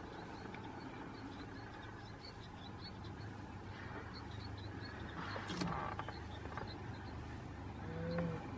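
Quiet outdoor ambience: a low steady hum like an idling vehicle engine, with faint, repeated high bird chirps and a single sharp click about five and a half seconds in.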